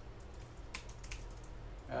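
Typing on an iPad's on-screen keyboard: a quick, uneven run of light key taps.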